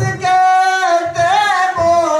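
A solo voice singing a naat without accompaniment, holding long notes that bend and waver.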